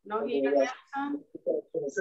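A dove cooing in short, repeated low notes, picked up over a participant's open microphone on a video call, after a single spoken word at the start.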